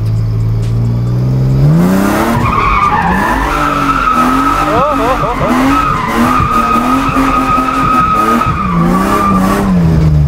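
Drift car's engine rising from idle about a second and a half in and then held at high, wavering revs, under a long, steady tyre squeal as the car slides sideways. Heard from inside the cabin.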